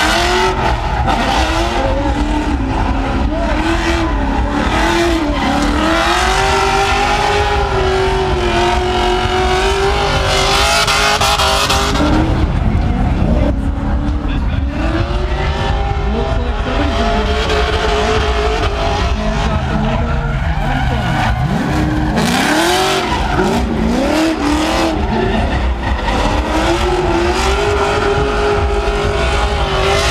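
Drift cars at full throttle, the engine pitch rising and falling continuously as they slide around the course, with tyres squealing and skidding.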